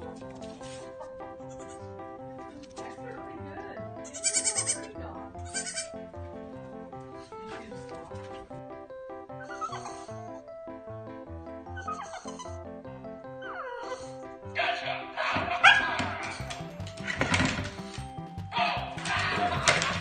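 Background music with a baby goat bleating twice, briefly, about four and five and a half seconds in. Louder, sudden noises come in over the music in the last five seconds.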